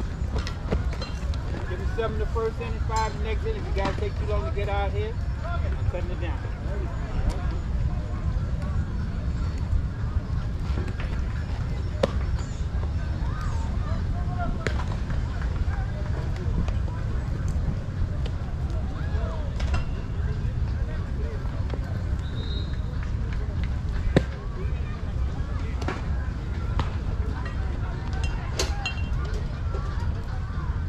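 Outdoor baseball-field sound: voices calling across the field in the first few seconds over a steady low rumble, then several sharp pops or knocks, the loudest about 24 seconds in.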